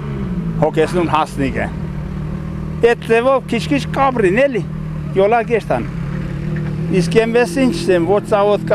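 A man talking in Armenian, over a steady low mechanical hum that runs under the whole stretch.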